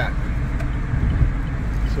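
Car driving with its windows down: a steady low rumble of road and wind noise inside the cabin.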